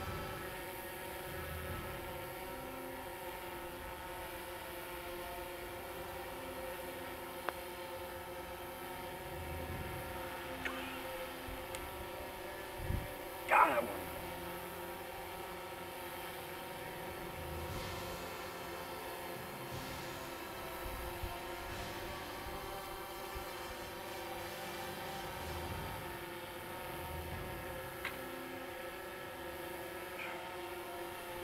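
Steady hum of a hovering camera drone's propellers, with several even pitches held throughout. About 13 seconds in there is a short, louder sound that falls steeply in pitch.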